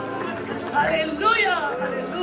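Several people praying aloud at once, voices overlapping in a large hall, with one voice rising and falling strongly about halfway through.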